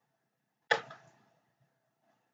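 A single sudden sharp noise, loud against a quiet room, that fades out over about half a second.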